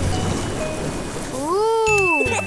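Cartoon water sound effect: a rushing, hissing spray of water for about a second and a half. It is followed near the end by a long voice that rises and falls in pitch.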